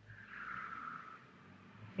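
A person breathing out slowly, a soft hiss that lasts about a second and fades.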